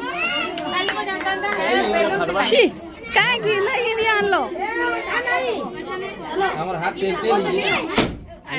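Many children's voices talking and calling out over one another in an excited party crowd, ending with a sharp bang right at the close.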